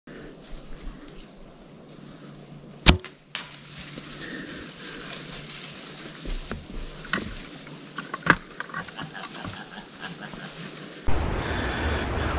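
A compound bow fired from a tree saddle: one sharp, loud crack of the release about three seconds in, with a fainter knock a moment after. A few small clicks follow over a quiet woodland background.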